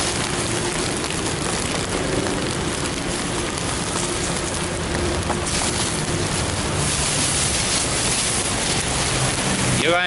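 Steady rain pattering on a plastic bag draped over the camera, heard close up as an even hiss with no let-up.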